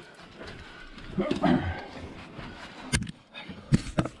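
Muffled voices and scuffing, with two sharp knocks, one about three seconds in and another near the end.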